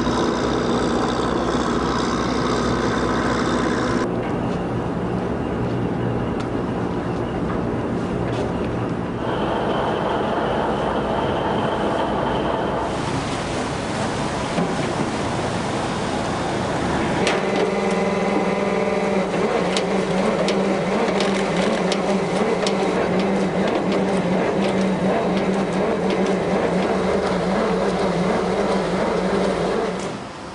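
Small fishing boats' engines running steadily under way, with water noise around them; the engine tone changes abruptly several times.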